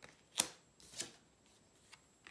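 A tarot card is slid and laid down onto the spread on a wooden table, making two brief paper-on-wood brushing sounds, about half a second in and again about a second in.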